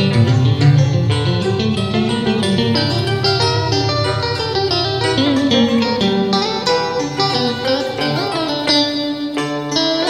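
Backing track playing an instrumental break of a Vietnamese duet song, a plucked-string melody over a steady beat.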